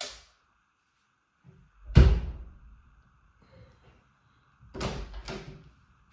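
Wooden interior door banging once, heavily, about two seconds in, followed by two lighter thuds close together near the end.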